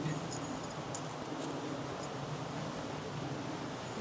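Faint rustling and a few light clicks as a packed hammock is handled and pushed down into a rucksack, over a steady low background hum.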